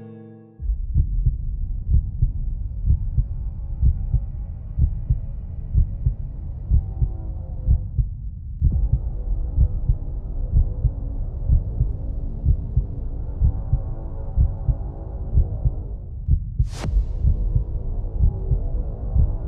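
Film sound design: a heavy heartbeat-like thumping, roughly two beats a second, under a muffled drone, starting suddenly about half a second in. A brief sharp hiss cuts in near the end.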